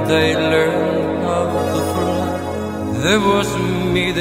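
Slow sung church music: a voice singing over held accompanying chords, with the chords changing about three seconds in.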